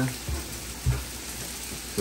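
Food frying in hot oil on the stove, a steady sizzle, with two soft low bumps about a third of a second and about a second in.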